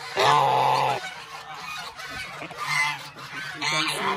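Domestic goose honking close up: one loud, drawn-out honk just after the start, then a few shorter, softer honks.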